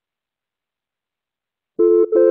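Dead silence, then near the end a telephone dial tone starts: a steady two-note hum as a new line is opened before dialing.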